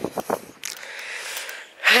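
A walker's breath between spoken phrases: a soft, steady breathy hiss lasting a little over a second.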